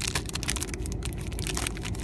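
Clear plastic film wrapper crinkling and crackling in quick irregular bursts as fingers pick at it to tear it open.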